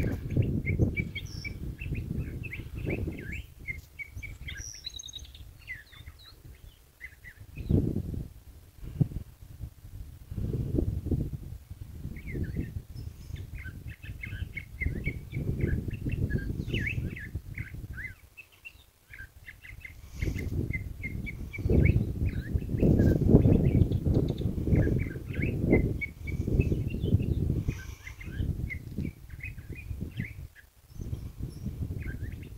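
A small bird chirping in quick runs of short notes, several a second. Gusts of wind rumble on the microphone, louder than the bird in places.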